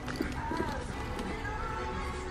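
Faint background music with a wavering melody over a low hum, and a few light clicks from a handbag being handled.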